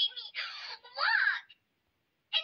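A high-pitched whining, wailing voice complaining in short bending phrases, cutting off abruptly about three-quarters of the way through.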